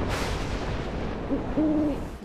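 Stormy-night sound effects: a noisy rumble of thunder, with an owl hooting once near the end.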